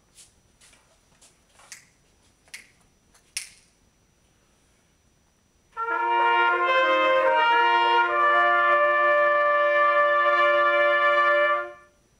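A few light clicks, then about six seconds in a group of B-flat trumpets plays a held chord, with some of the notes moving once or twice, and stops just before the end.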